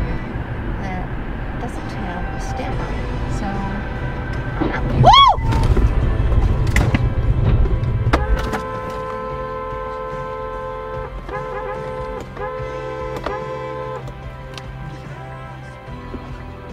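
Road and engine rumble heard from inside the car, with a brief squeal rising and falling about five seconds in, at the loudest moment, as a taxi crashes into a stalled car ahead. From about eight seconds the rumble drops away and music with held notes takes over.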